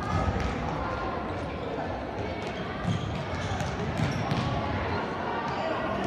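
Echoing sports-hall din of a children's indoor football game: indistinct children's voices calling out over thuds of the ball being kicked and bouncing on the hall floor, and running footsteps. Louder knocks come just after the start, about three seconds in and about four seconds in.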